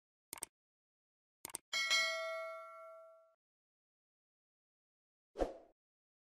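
Two short clicks about a second apart, then a single bell ding that rings out for about a second and a half: a subscribe-button notification sound effect. A brief soft thud follows near the end.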